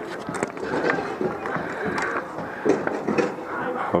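Several voices talking and calling out across an outdoor rink, with a few sharp clicks in between.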